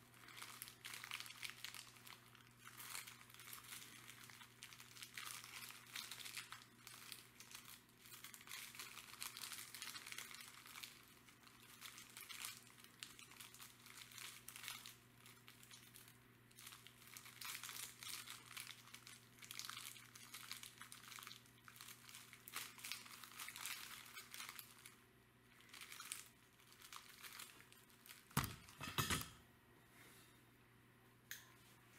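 Small plastic zip bag of uranium glass beads crinkling faintly and irregularly as it is turned and squeezed in the hand, with a louder burst of handling near the end. A faint steady low hum runs underneath.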